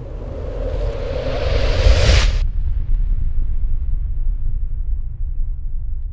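Cinematic transition sound effect for a title card: a rising whoosh that swells for about two seconds and cuts off sharply, over a deep rumble that carries on and slowly dies down.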